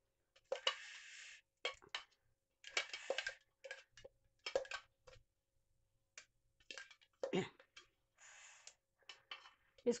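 A metal spoon scraping and tapping inside a stainless-steel mixer-grinder jar as ground radish and green-chilli paste is scooped out into a bowl. The sound comes as short, separate clicks and scrapes with pauses between them.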